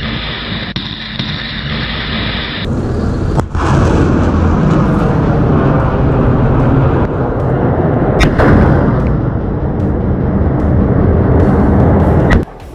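Multiple rocket launcher, M142 HIMARS, firing rockets: a loud continuous roar of rocket motors. The roar changes abruptly near the three-second mark, and sharp cracks come about three and a half and eight seconds in.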